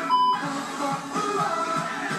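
A short electronic test-tone beep, like the bleep over TV colour bars, used as an edit transition just after the start, followed by pop music with a steady beat from a stage performance.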